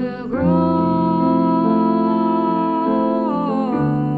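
Live band music from saxophones, electric guitar and keyboard: one long melody note is held from about half a second in until it slides down near the end, over steady chords below it.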